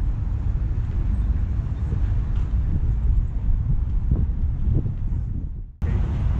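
Wind buffeting an action camera's microphone on an open rooftop, a loud low rumble that rises and falls in gusts, with a faint hum of city traffic under it. The sound drops out abruptly near the end.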